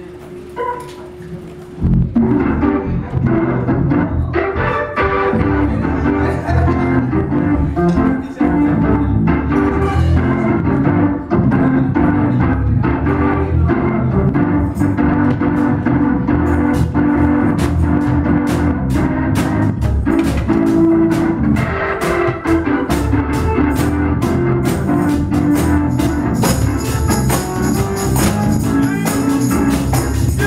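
Organ and drums playing a gospel song. A quiet held organ note comes first, then the full band comes in loudly about two seconds in. The percussion gets busier in the last few seconds.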